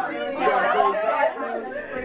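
Several people talking at once: lively group chatter with overlapping voices.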